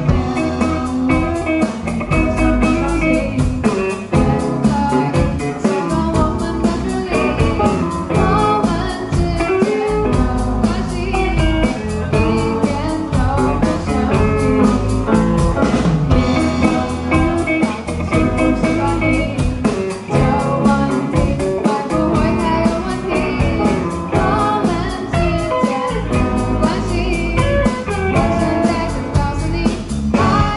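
Live rock band playing a song: a girl sings lead into a microphone over electric guitars, keyboard and a drum kit keeping a steady beat.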